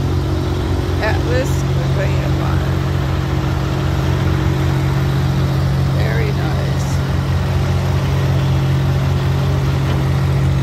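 Diesel semi-truck engine idling, a steady low drone.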